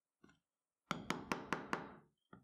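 A mallet striking a metal leather hole punch through a leather strap into a wooden block: five quick sharp strikes, about five a second, each with a brief ring, after a soft tap as the punch is set.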